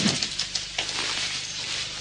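Hospital bed being handled: a sharp clank at the start and a few faint clicks from the metal bed rails, over a steady background hiss.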